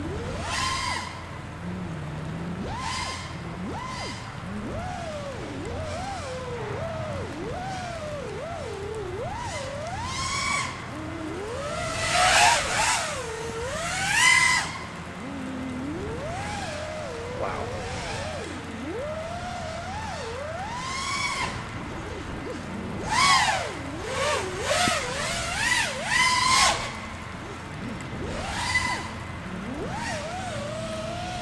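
Quadcopter's four brushless motors and propellers whining in flight, the pitch sliding up and down with the throttle. There are loud full-throttle surges about 12 and 14 seconds in and again several times between about 23 and 27 seconds. The motors run on a four-cell battery, with their bells held on without C-clips.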